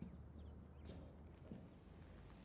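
Near silence: low room tone with a few faint ticks.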